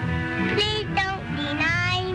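Film song: a high voice sings sliding, rising notes over an orchestral accompaniment, on an old soundtrack.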